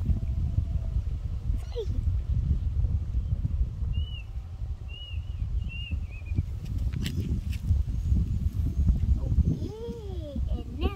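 Wind buffeting the microphone in a steady low rumble, with a few short, high squeaks from a young animal about halfway through and a rising-and-falling animal call near the end.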